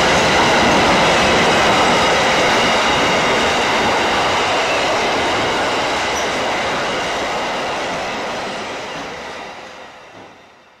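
Freight train's container flat wagons rolling past on the rails: a loud, steady rolling noise with a thin, high, steady whine from the wheels. It fades away over the last few seconds as the end of the train passes.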